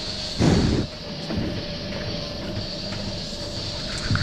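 A cow blowing a loud, short breath onto the microphone about half a second in, over the steady hum of the robotic milking machinery.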